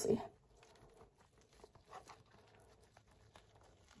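Very quiet, faint soft handling sounds of a flatbread wrap being rolled up by hand on a ceramic plate, a few light touches about a second and a half to two seconds in.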